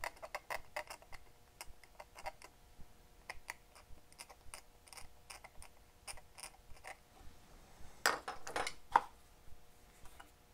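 Irregular light clicks and ticks of a small circuit board and a soldering iron being handled at an electronics bench. About eight seconds in comes a brief run of louder clicks and rattles as the board is set into a board holder. A faint steady hum runs underneath.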